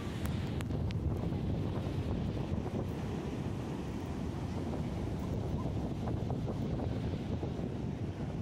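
Wind buffeting the microphone in a steady low rumble, with ocean surf washing in behind it.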